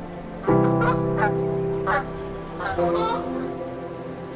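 Several short bird calls with wavering pitch, over background music that holds a sustained chord from about half a second in.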